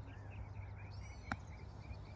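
Faint birds chirping over a steady low outdoor rumble, with a single sharp click about a second and a half in.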